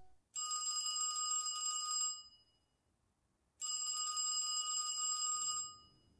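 Telephone bell ringing twice, each ring about two seconds long with a silent pause of about a second and a half between them.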